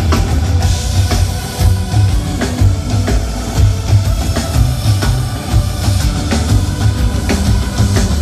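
Live rock band playing through the stage PA at a soundcheck, with a steady drum-kit beat and electric guitars.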